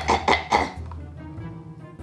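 A person clearing their throat: a few short coughs in the first half-second or so, then faint background music.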